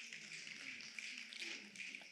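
A quiet pause: faint room tone of a stage microphone and hall, with a few faint small taps.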